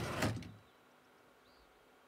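Sliding shoji door sound effect: a sharp click as the doors are slid open, with a short sliding rush that fades within about half a second.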